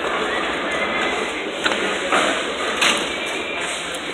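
Bowling alley din, a steady wash of noise from the lanes. About halfway through come a few sharp knocks and clatters, the sound of pins being struck.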